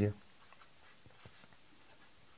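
Marker pen writing on paper: a few faint strokes, the most distinct about a second in.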